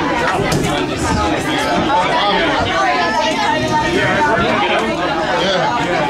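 Several people talking at once: overlapping chatter among a small group in a room.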